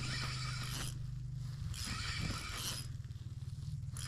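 Spinning reel on an ice fishing rod working against a hooked fish, in two zipper-like buzzing bursts about a second long each, a second apart.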